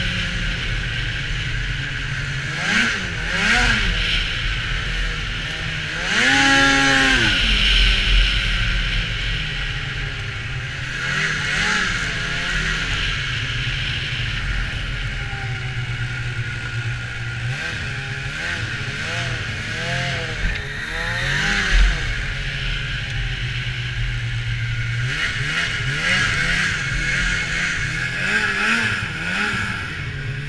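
Polaris SKS 700 snowmobile's two-stroke twin engine revving up and down again and again under the throttle, the pitch rising and falling many times, with the biggest rev about six seconds in. A steady hiss runs underneath.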